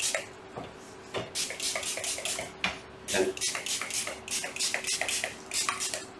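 Handheld spray bottle squirting a 50/50 water-and-alcohol mix onto a 3D printer build plate around printed parts to loosen them. It gives quick repeated squirts, several a second, in runs with short pauses between.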